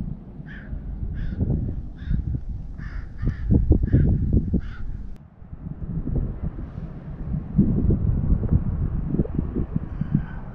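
A bird calling about eight times in quick succession during the first half, over a loud, uneven low rumble that continues after the calls stop.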